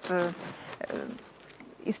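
A woman's voice briefly at the start, then a quiet pause with faint rustling and a few small clicks from handling at a kitchen counter, ending in a sharp click.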